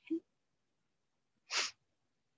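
A brief vocal blip near the start, then a short, sharp breath noise through the nose close to the microphone about a second and a half in.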